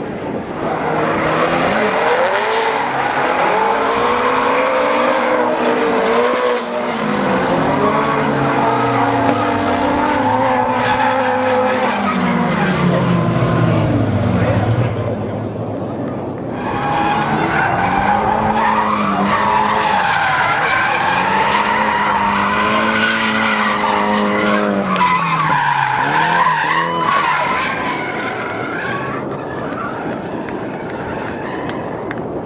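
Drift cars' engines revving up and down hard while their tires squeal and skid through the slides. This comes in two long stretches with a brief lull about halfway through.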